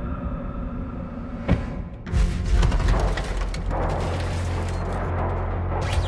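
Dark, tense film score with sound effects: a sustained drone, a sharp hit about a second and a half in, then from about two seconds on a dense noisy rush over a steady low hum, with another hit near the end.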